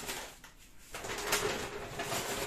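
Plastic shopping bag and snack packaging rustling and crinkling as hands rummage inside the bag, starting about a second in.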